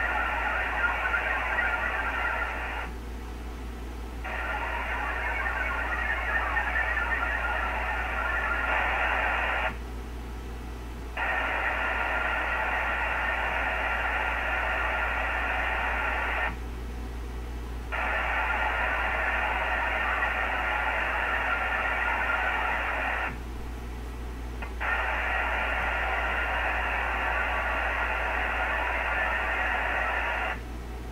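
VARA HF digital modem signal received over a 40-meter ham radio link: a dense, hissing warble of many tones in blocks of about six seconds, cut by short gaps of about a second and a half. In each gap the station sends its acknowledgement back, 'good copy' or 'send it again'. A steady low hum runs underneath.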